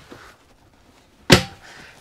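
A hinged caravan door shuts with one sharp knock about a second and a half in, ringing briefly.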